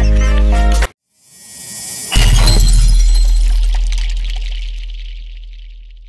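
Edited-in music and sound effect: a loud sustained chord cuts off just under a second in. After a brief silence, a rising swell builds into one heavy impact hit about two seconds in, and its ringing tail fades slowly away.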